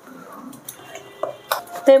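A steel ladle clinking a few times against a glass mixing bowl while stirring thin batter, with a woman starting to speak just before the end.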